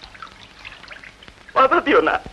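A man's speech pauses, leaving only a faint background hiss for about a second and a half, then he speaks again near the end.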